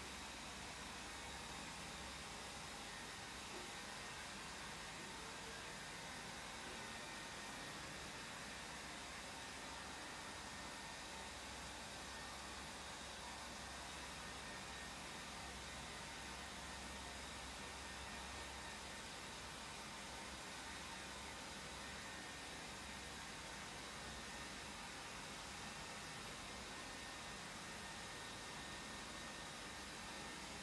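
A steady, even hiss with a faint high-pitched hum running under it, unchanging throughout.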